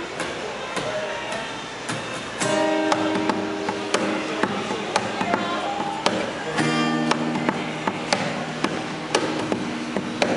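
Acoustic guitar played live as the instrumental opening of a song: a few soft notes, then strummed chords start ringing out about two and a half seconds in, changing chord partway through.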